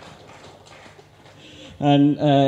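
A short pause in a man's speech over a microphone, with only faint room noise. His voice comes back just before the end.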